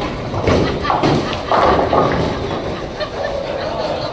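Bowling ball crashing into the pins early on, a sharp clatter of pins, amid the din of a busy bowling alley with people's voices and a loud call or shout about a second and a half in.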